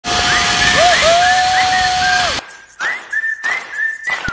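Wind rushing over the microphone on a zipline ride, cutting off suddenly about two and a half seconds in. A whistled tune runs through it with short gliding notes, and it carries on after the wind stops.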